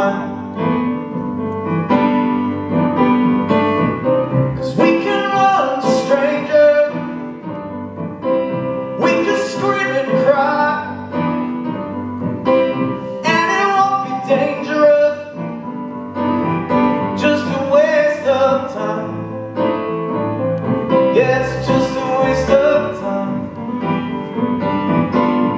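Piano played live in a solo performance: chords and runs struck in a steady rhythm without a break.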